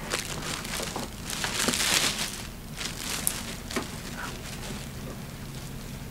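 Plastic wrapping crinkling as it is pulled off a projector, loudest about two seconds in and quieter in the second half, with a few light clicks.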